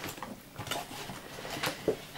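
Objects being handled: a few light clicks and knocks over faint rustling, the last two close together near the end.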